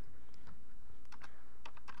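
Typing on a computer keyboard: a quick, uneven run of separate key clicks, with a steady low hum underneath.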